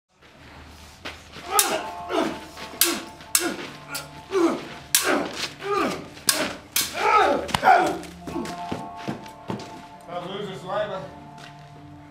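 Stage-combat sabres clashing in a rapid series of about a dozen sharp strikes, with the fighters' grunts and shouts between them. The clashes die away after about eight seconds, leaving heavy breathing and voice sounds.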